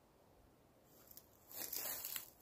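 Footsteps crunching and rustling on dry pine needles and forest litter. Faint crackles start about a second in, then grow into louder crunching steps.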